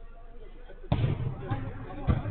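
A football struck hard about a second in, a sudden thump, followed by a lighter knock about half a second later, with players' voices on the pitch.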